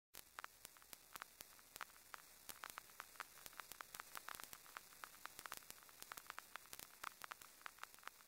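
Faint static: a low hiss with irregular sharp crackles, a few each second.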